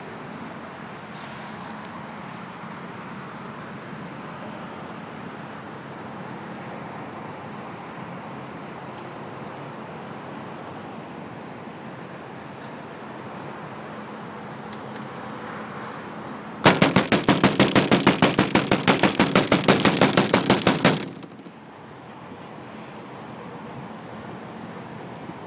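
A rapid burst of loud, sharp bangs, about seven a second, starts about two-thirds of the way in and stops suddenly about four seconds later: the noise used to scare the boss. Before it there is only a steady background hum and hiss.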